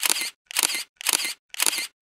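Digital SLR camera shutter firing four times, about two shots a second, each shot a quick double click. It is a run of exposures, one per ISO setting.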